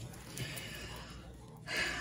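A woman's quick, sharp in-breath near the end, taken just before she starts speaking again, after a faint stretch of breathing.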